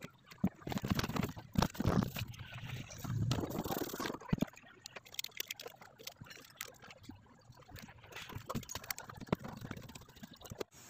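Irregular clicks, knocks and scrapes of hands refitting the drive belt and the rubber drain valve under a twin-tub washing machine, busiest in the first few seconds.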